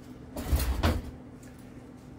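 A brief knock and scuff about half a second in, lasting about half a second, over a faint steady hum.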